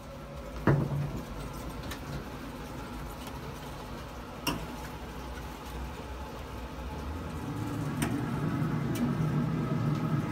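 A sharp metal clank about a second in, then a few lighter knocks and clicks, as a brisket tray and a pellet smoker's lid are handled, over a steady low hum that grows slightly louder near the end.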